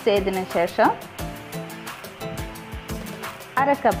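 Background music with sustained tones and a steady beat, with a voice speaking briefly in the first second and again near the end.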